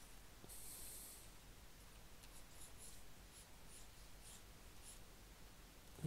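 Faint scratching of a pen stylus on a graphics tablet as brush strokes are painted: one longer stroke near the start, then a run of short, quick strokes.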